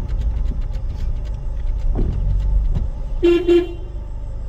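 Car horn beeping twice in quick short toots near the end, over the steady low rumble of the car driving slowly on a rough road.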